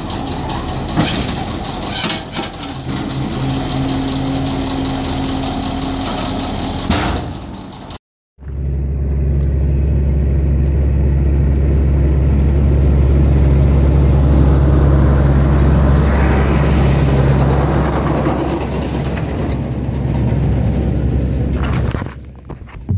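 Case Maxxum 125 tractor and Case RB 455 round baler running with a steady machine hum while the baler's tailgate is open and a finished straw bale drops out. After a sudden cut about eight seconds in, a louder, steady low rumble with a hum takes over.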